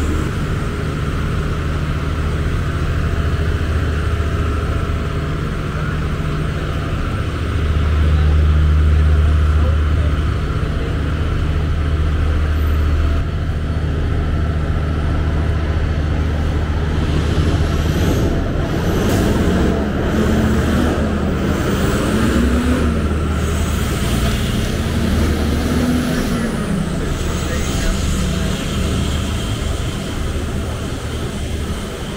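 Street traffic: a heavy engine's steady low rumble through the first half, loudest about a third of the way in. In the second half it thins and the voices of people talking on the sidewalk come up.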